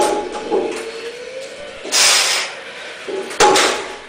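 A loaded 150 kg barbell, rigged with resistance bands, knocks down onto the floor between deadlift reps, twice, about three and a half seconds apart, each with a brief metallic ring. Between the two there is a sharp, hissing exhale lasting about half a second.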